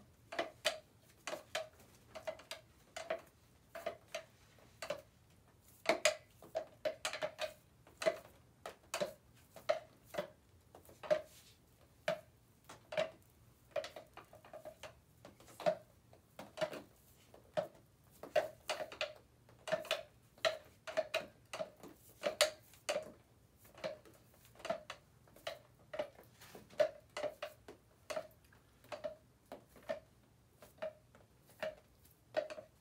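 A drumstick tapping against the rim of a paint cup: irregular knocks, about one to three a second, each with a short ringing note.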